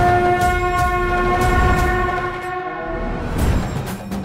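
A long, steady blown horn-like tone, held for about three seconds and then fading out, over low drum rumbles of the title music.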